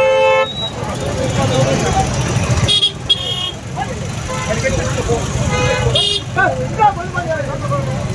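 Outdoor street crowd: a vehicle horn honks once at the very start, and more short, high-pitched tones follow about three seconds and six seconds in. Under them runs a steady rumble of crowd voices and shouting.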